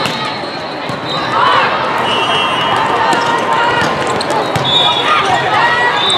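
Busy volleyball tournament hall: many overlapping voices of players and spectators calling out, with sharp volleyball hits and bounces from the rally and neighbouring courts, and a few short high squeaks or whistles.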